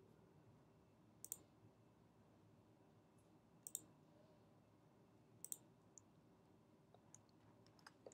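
Faint computer mouse clicks: three sharp double clicks (press and release) about two seconds apart, then a few softer single clicks near the end.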